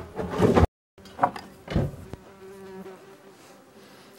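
Hornet buzzing close by: a steady hum that wavers slightly in pitch, clearest in the second half.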